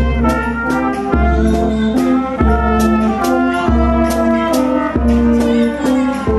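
Brass and drum band playing a march: trumpets, horn and euphonium sound the tune and chords over snare drums, with a deep drum stroke about every second and a quarter.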